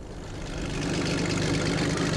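Heavy engine of a tracked armoured vehicle running at a steady pitch, fading in and growing louder.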